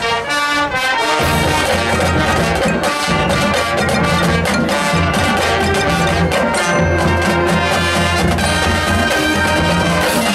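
Marching band playing: brass over drums and mallet percussion. The low brass and bass drop out briefly at the start and come back in about a second in.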